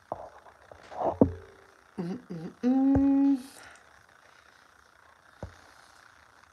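A woman humming with her mouth closed: a couple of short wavering hums about two seconds in, then one steady hum held for under a second. A few light clicks and a knock come before and after.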